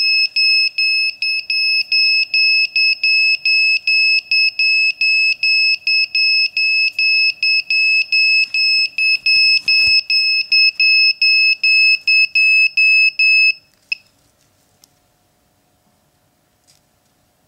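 MikroKopter flight controller's buzzer beeping rapidly, a high-pitched beep about three times a second, stopping suddenly about two seconds before the end. It is the signal-loss failsafe alarm, set off by unplugging a receiver channel.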